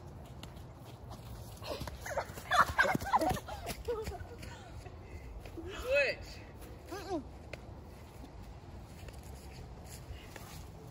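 Children's shouts and laughter during play: a burst of calls about two seconds in, then short cries near six and seven seconds, over a low rumble of wind on the microphone.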